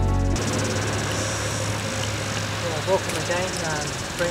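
Music cuts off abruptly about a third of a second in. It gives way to open-air background noise with a low steady hum and a few faint voices near the end.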